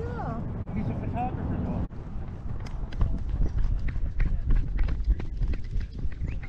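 A GoPro worn by a running dog: irregular thumps and a low rumble as the dog's strides jolt the camera, growing busier from about two seconds in.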